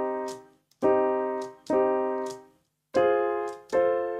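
Piano-sound chords from a software instrument played on a MIDI keyboard through the AutoTonic transposing plugin: four triads struck about a second apart, each left to ring and fade. The triads serve as pivot patterns that switch the plugin between scales.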